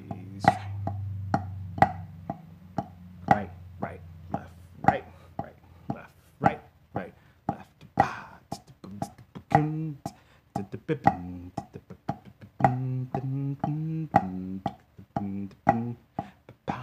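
Wooden drumsticks on a rubber practice pad playing the Swiss army triplet rudiment: a regular pattern of accented strokes with softer taps between. A man's voice hums a low tone at the start and sings short pitched notes along with the strokes in the second half.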